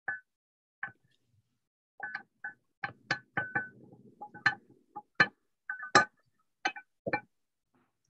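A cooking utensil tapping and scraping a frying pan as garlic fried rice is scooped out into a bowl: an irregular string of sharp, ringing clinks and knocks, with a short stretch of scraping in the middle.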